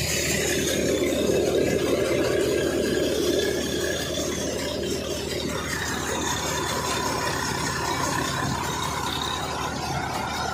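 Tractor-driven soybean thresher running steadily, with the tractor engine and the threshing machinery making one continuous mechanical noise. The noise shifts slightly in tone about halfway through.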